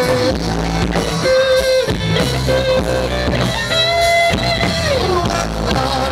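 Live rock band playing, with electric guitar over bass guitar. A long held note slides down in pitch about five seconds in.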